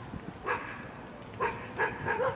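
A dog barking: three short barks, the last two close together.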